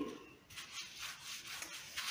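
Paintbrush bristles brushing paint onto a wall in repeated short, quiet strokes.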